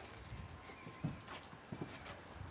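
A few scattered hollow knocks and light rustling from someone shifting their knees and boots on a felted timber shed roof and handling a roll of roofing felt.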